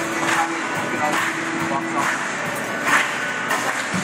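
Live music from a drum kit and keyboard accompanying a choir. A drum-and-cymbal beat lands about once a second over a held note.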